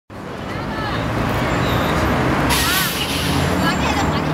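City street traffic: steady engine hum from passing vehicles, with indistinct voices of passers-by. A sudden hiss comes in about two and a half seconds in.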